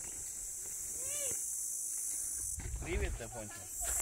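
A steady, high-pitched chorus of insects buzzing in dry scrub, its strength shifting a little partway through, with faint men's voices in the background.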